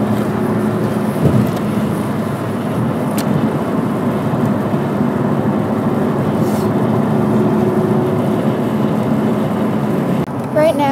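Steady road noise heard from inside a car cruising on a highway: tyre rumble and engine drone with a low, even hum.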